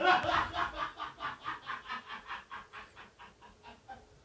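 A person's laugh: a run of short, breathy chuckles, about six a second, that starts fairly loud and fades away.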